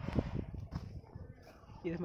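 Low rustling and thumps of someone walking on dry ground while carrying the camera, loudest in the first half second. A voice starts speaking near the end.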